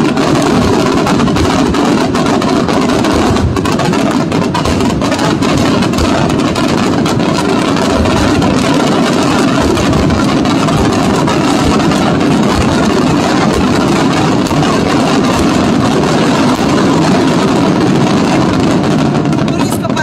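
Aerial fireworks going off in a rapid, unbroken barrage of bangs and crackles, the reports overlapping into a continuous din that breaks off at the very end.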